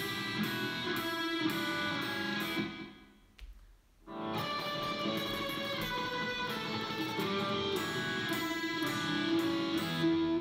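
Clean electric guitar picking a descending walk-down of two-string double-stops on the B and high E strings, ending on the open B and E strings. It plays for about three seconds, stops briefly, and starts again about four seconds in.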